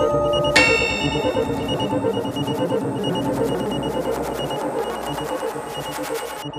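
Avant-garde electronic music: a bright synthesizer note enters about half a second in, over a dense, fast-pulsing texture with a high, repeating beep like an alarm clock. The texture slowly grows quieter toward the end.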